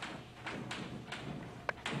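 Chalk writing on a blackboard: about six short strokes and taps, with one sharp click near the end.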